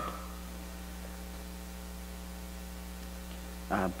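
Steady electrical mains hum, a low buzz with a stack of even overtones holding at one level. A man's voice comes in near the end.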